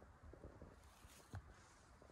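Near silence: faint outdoor quiet with a low rumble and one small click about a second and a half in.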